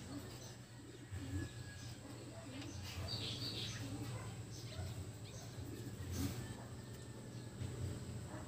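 A bird cooing faintly, a soft call repeating about once a second, with a brief higher chirp a few seconds in, over a low steady hum.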